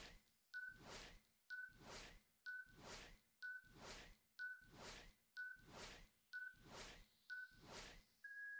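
Faint countdown-timer sound effect: a short high beep followed by a tick, once a second, eight times as the timer counts down.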